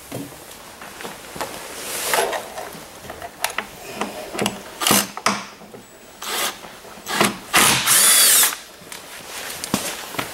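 Cordless drill-driver running in several short bursts to back out the fasteners holding a snowmobile hood. The longest and loudest run, about a second with a high motor whine, comes near the end.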